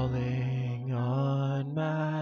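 Live worship band music: voices holding long sung notes over sustained low bass notes that step up in pitch twice.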